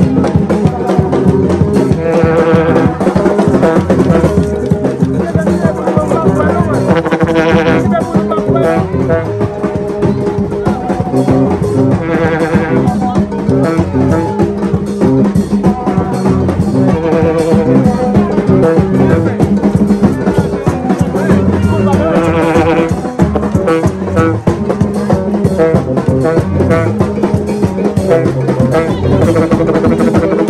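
Gagá street band playing live: blown tube horns holding a repeating riff over drums, with crowd voices swelling in about every five seconds.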